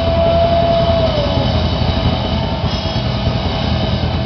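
Live rock band playing loud: drum kit and bass guitar pounding under electric guitar, with a long held high note that sags and fades about a second in.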